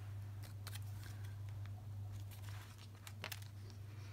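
Paper being handled on a journal page: faint scattered rustles and light clicks as a paper leaf cutout is moved and a flip page is lifted, over a steady low hum.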